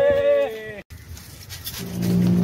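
A man's drawn-out, high-pitched shout, falling slightly in pitch, that breaks off about half a second in. After an abrupt cut, a steady low hum starts near the end.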